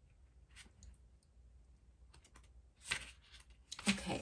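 Faint handling noise of oracle cards on a table: scattered light clicks and a short rustle about three seconds in.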